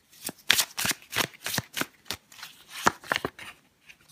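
A deck of tarot cards being shuffled by hand: an irregular run of quick, sharp card snaps and flicks.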